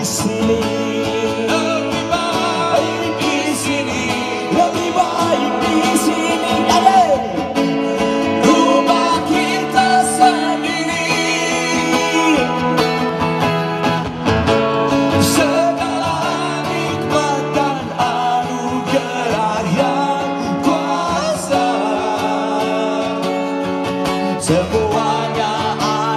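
A live band playing: guitars over drums, with some sung vocal lines.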